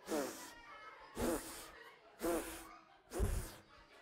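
A man's voice making four short, breathy, wordless sounds about a second apart, each rising and falling in pitch: a ventriloquist voicing his limp puppet as it groans and sighs after a pretend injury.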